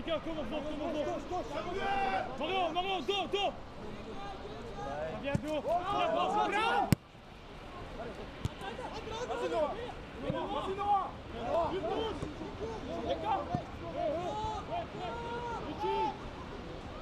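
Shouts and chatter from players and spectators around a football pitch, some calls rising sharply, with one sharp click about seven seconds in.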